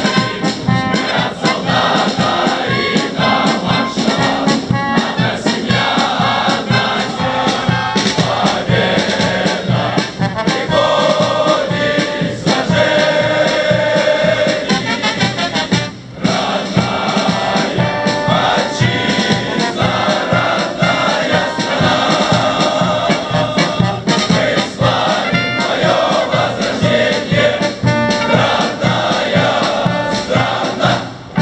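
Military march music, most likely a brass band, playing loudly with a steady beat while the cadets march past.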